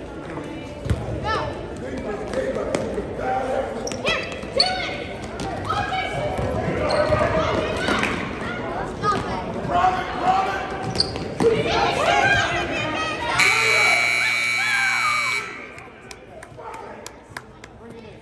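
Basketball game in a gym: the ball bouncing and people's voices calling out over the play. About thirteen seconds in, a steady buzzer sounds for about two seconds and cuts off, the loudest single sound.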